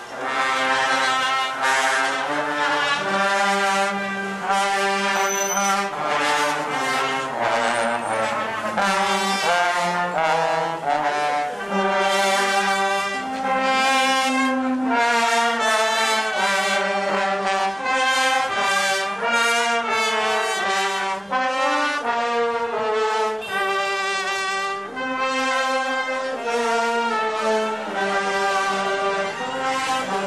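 A Chinese funeral brass band playing a melody in the street, trombones and trumpets in unison on a string of held notes that change about every half-second to a second.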